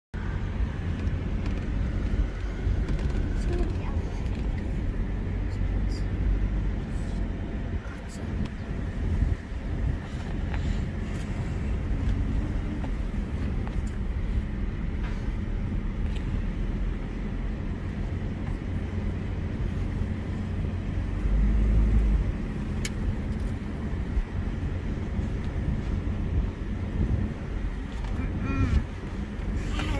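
Mitsubishi vehicle heard from inside the cabin while driving slowly on a sandy dirt track: a steady low engine and tyre rumble with scattered small knocks and rattles. The rumble swells for a moment a little past three-quarters of the way through.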